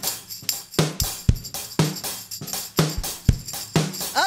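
Drum kit playing a steady beat, about four hits a second, with the bass drum landing about twice a second.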